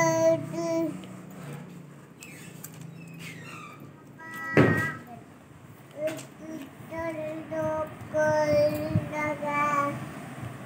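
A small child's sing-song voice holding long level notes, with a short loud vocal burst about halfway through.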